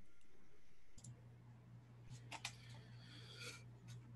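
Faint scattered clicks and a brief rustle over a low steady hum that comes in about a second in.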